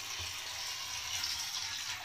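Battery-powered robotic toy fish swimming in a bathtub, its motor-driven tail flapping and churning the water surface into steady, light splashing.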